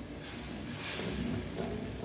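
Creamy gorgonzola sauce simmering in a pan on a gas stove as a spoon stirs it: a faint, steady hiss.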